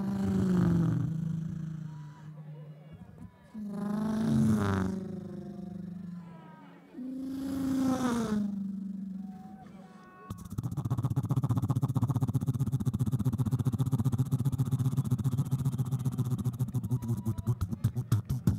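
A human beatboxer making vocal sound effects into a stage microphone: three long sliding tones whose pitch bends up and down, then from about ten seconds a steady buzzing bass that breaks into a fast pulsing beat near the end.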